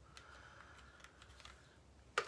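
Near silence: faint room tone with a steady low hum and a few soft, small clicks, like items being handled.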